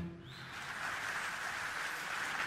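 Audience applause: a steady, even clapping noise that starts as the music ends and builds slightly.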